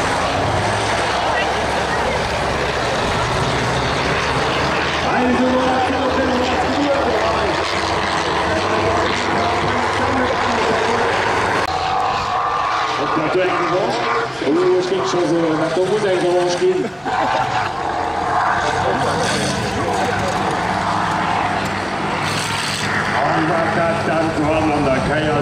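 Engines of several racing combine harvesters running hard, their pitch rising and falling as they are throttled over the course.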